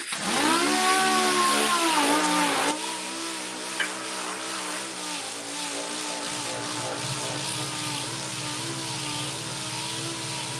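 Six-inch dual-action orbital sander with an interface pad, starting up and sanding the paint on a motorcycle gas tank. It comes in loud with a whine whose pitch dips and wavers, then a few seconds in drops to a quieter, steady whine as it works the surface.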